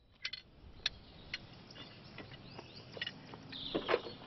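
Birds chirping over a faint steady outdoor hiss: short sharp chirps every half second or so, and a louder call sweeping down in pitch near the end.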